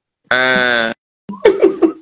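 A person's voice over a video-call link: one held, steady-pitched vocal sound of about half a second, then a few short vocal sounds near the end.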